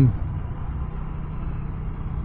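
Honda Navi's small single-cylinder engine running steadily under the rider, mixed with wind and road noise, as the bike eases off from about 27 to 22 mph.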